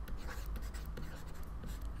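A pen writing by hand: quiet, short, irregular scratching strokes as a word is written out.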